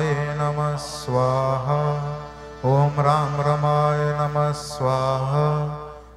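A man chanting a Hindu mantra into a microphone in long, held, melodic phrases, with short breaks between them.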